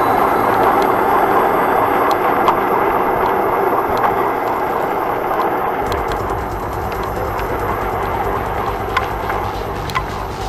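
Steady rushing of wind and tyre-on-road noise, picked up by a small body camera mounted low on a Kingsong S18 electric unicycle while riding along a street. A deeper rumble joins about six seconds in, with a few faint clicks.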